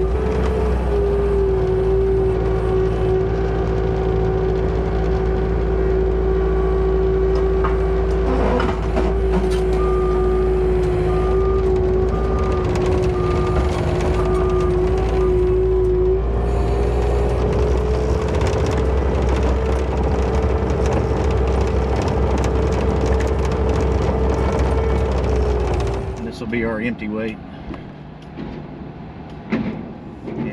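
An engine running steadily close by, its pitch stepping up slightly a little past halfway, with a short run of evenly spaced beeps in the middle. Near the end the engine sound stops and quieter, broken-up sound follows.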